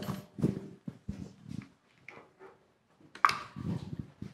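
Scattered knocks, scrapes and rustles of people settling onto tall stools and handling things around them, with the sharpest knock about three seconds in.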